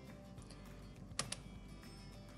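Two quick, sharp clicks of a computer mouse button, a little over a second in.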